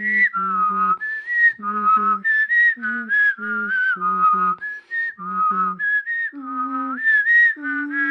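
A person whistling a melody while voicing a lower line at the same time, two parts moving together in short, separated notes.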